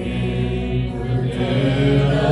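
Worship song: voices singing long held notes over instrumental accompaniment.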